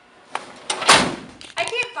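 A short noisy swish that swells and ends in a knock about a second in, the loudest sound here, followed by a man's voice.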